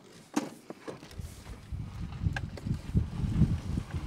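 A few light clicks, then, from about a second in, a low, uneven rumble that rises and falls.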